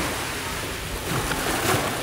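Small wave washing up the sand around a stone step, the rush of water swelling in the second half.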